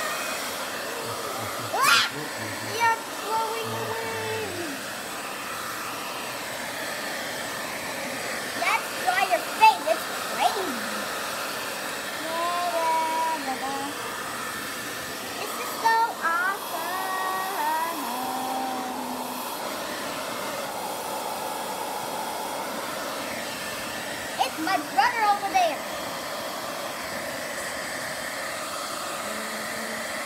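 Handheld hair dryer running steadily, blowing on damp plush toys to dry them, with a few short stretches of voices over it.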